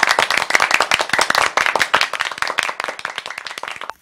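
Applause: many hands clapping in a dense, irregular patter that stops suddenly near the end.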